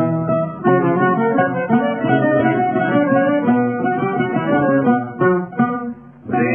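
Instrumental break of a rebetiko song: bouzouki and guitar playing a quick plucked melody with chords, in the dull, narrow-band sound of an old recording. The playing drops away briefly at the very end.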